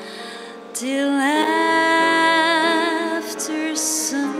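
Female vocalist singing a slow jazz ballad with grand piano accompaniment. After soft held piano chords, the voice comes in about a second in, sliding up into a long held note with vibrato.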